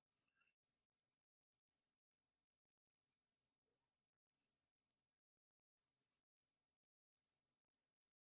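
Near silence: a faint room hiss that cuts out to dead silence several times.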